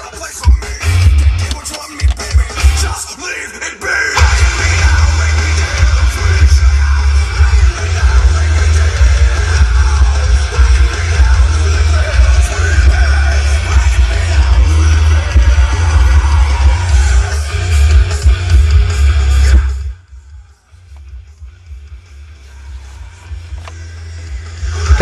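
Hard rock playing loud through the car stereo with the Cerwin-Vega VPAS10 powered subwoofer switched on, heavy bass under the guitars and vocals, heard inside the car's cabin. The music drops sharply quieter about four seconds before the end.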